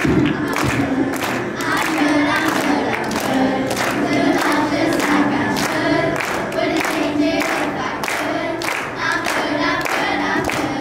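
A children's choir of fifth-grade girls singing a lively song, with singers and audience clapping along in a steady beat.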